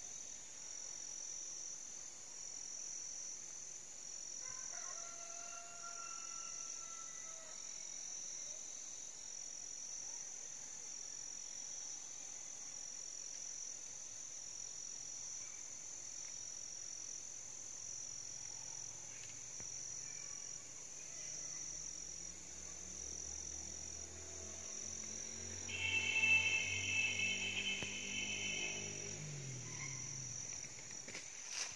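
Forest ambience of insects making a steady, evenly pulsing high-pitched drone, with a short pitched animal call about five seconds in. Near the end, a louder drawn-out pitched call lasting about three seconds, over a low hum that rises in pitch.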